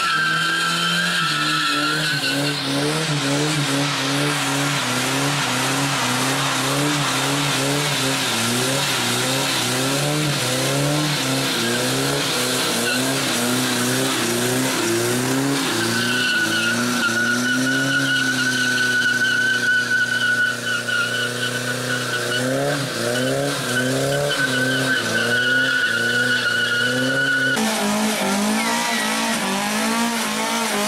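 A Volvo 700-series sedan doing a burnout: its engine revs up and down over and over while the spinning rear tyres give a steady high squeal. The squeal fades after the first couple of seconds, returns about halfway through, and drops out shortly before the end.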